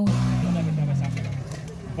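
An engine running steady outdoors, its pitch sinking a little over the first second and a half, over a haze of outdoor noise. A man's voice starts right at the end.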